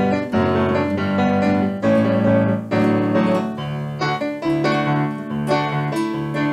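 Live instrumental music: electric piano playing repeated chords, with a nylon-string acoustic guitar.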